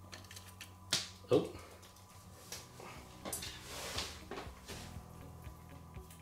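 Feeding tongs holding a locust, clicking and scraping against the tarantula enclosure and its substrate: a sharp click about a second in, then a run of lighter taps and rustles in the middle.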